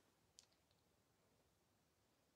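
Near silence with a single faint click about half a second in, followed by a couple of fainter ticks.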